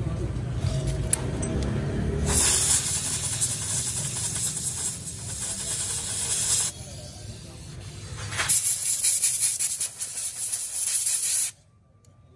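A pressurised spray hissing in two long, even stretches, with a short quieter gap between them. It cuts off suddenly near the end.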